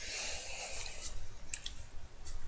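Paper rustling as it is handled, with a few light ticks after about a second and a half.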